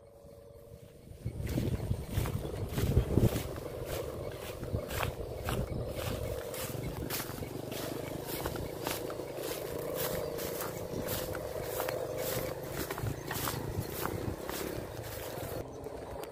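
Steady drone of a kite hummer (sendaren) on a large kite, with regular crunching footsteps about twice a second and wind rumble on the microphone.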